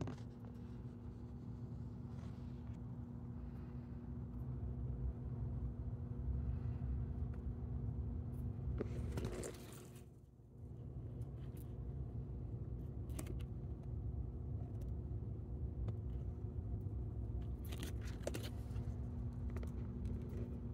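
Steady low rumble with a constant mechanical hum, with a few faint clicks and scrapes. A brief swishing noise comes about nine seconds in, and the sound dips for a moment just after it.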